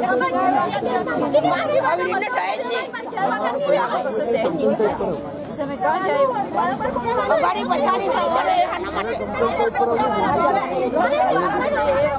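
Several women talking at once, their voices overlapping in steady chatter.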